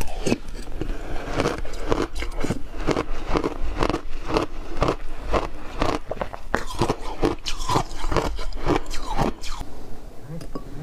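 A person crunching and chewing a mouthful of icy slush close to the microphone, with crisp crunches coming about two or three a second.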